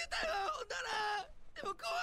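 Japanese anime dialogue: a male character's voice delivering two lines with a short pause between them.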